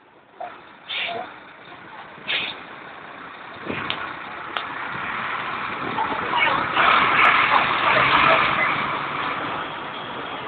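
DAF four-axle truck driving slowly past at close range, its diesel engine and running gear growing much louder from about four seconds in as it comes alongside.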